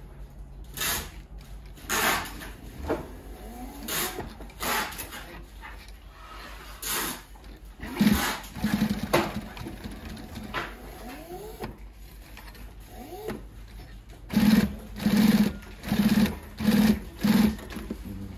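Consew industrial sewing machine stitching in short bursts, with stops between them, through four layers of heavy 12–16 oz fabric with thick thread. The last five bursts come in quick succession near the end.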